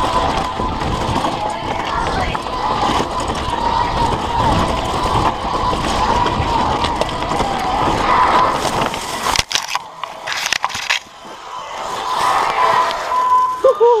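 Full-suspension mountain bike (Commencal Meta SX) running fast down a rough dirt trail: tyre, chain and frame rattle with wind on the microphone. About nine and a half seconds in the riding noise cuts off suddenly and a few sharp knocks follow as bike and rider crash into the bushes, and a shout of "woo" comes at the very end.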